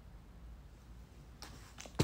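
Quiet low hum, then a few soft clicks about one and a half seconds in and a sharper click at the very end.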